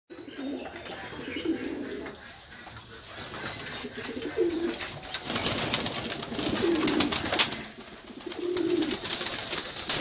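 A flock of domestic pigeons cooing in a loft, several low coos one after another. From about halfway the crowded birds add fluttering wings and scuffling, with a few sharp clicks.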